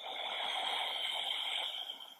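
One long, steady audible breath, about two seconds, held evenly from start to finish.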